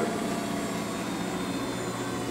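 Parker-Majestic internal grinder running, a steady, even motor hum.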